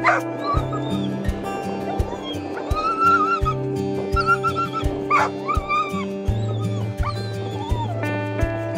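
A dog whining in repeated high cries that rise and fall, with two sharp yelps, one at the start and one about five seconds in, over background music with a steady beat.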